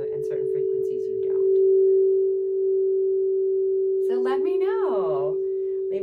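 An 8-inch frosted crystal singing bowl ringing one sustained, steady tone that swells louder about two seconds in.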